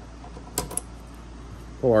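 Two light metallic clicks about a fifth of a second apart, from a Schlage F-series doorknob and its key being handled as the knob is pushed onto its spindle.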